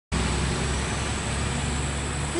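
A truck towing an enclosed trailer passing on a road, a steady low engine rumble.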